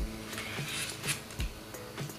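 Soft background music with steady held tones, with a couple of dull knocks from the small plastic handheld fan being handled.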